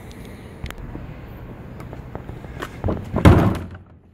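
Plastic wheeled garbage cart being handled and tipped over onto its side, with a few small knocks and then a loud thump a little after three seconds in as it comes down.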